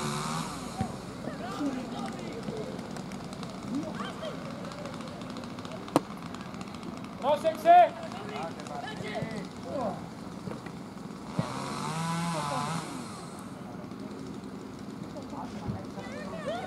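Shouting voices of players and coaches across an outdoor football pitch, with a loud burst of shouting just before eight seconds in. There is a single sharp knock about six seconds in, and a swell of noise with voices about twelve seconds in.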